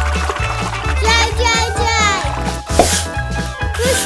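Upbeat background music with a steady, repeating bass beat, overlaid with short swooping, rising-and-falling sound effects.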